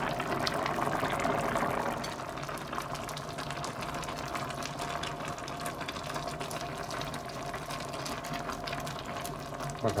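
Broth simmering in a cooking pot, a steady bubbling that is louder for the first two seconds and then quieter as pre-cooked noodles are stirred in with a spatula.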